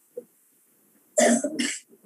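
A person coughing twice in quick succession, a little over a second in.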